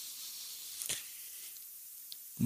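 Faint steady hiss of background noise on the recording during a pause in speech, with one soft click a little under a second in.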